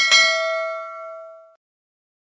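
A mouse-click sound effect, then a notification-bell ding that rings with several clear tones and fades out over about a second and a half.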